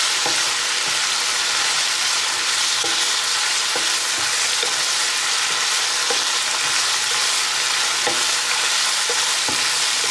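A stir-fry of bean sprouts and mushrooms sizzling steadily in a nonstick frying pan as a wooden spatula turns it, scraping and tapping against the pan at irregular moments over the sizzle.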